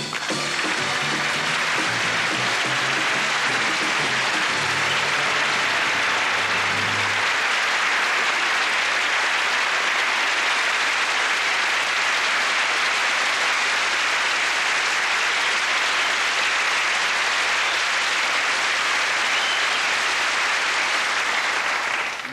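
Studio audience applauding steadily throughout, with music playing under it for about the first seven seconds.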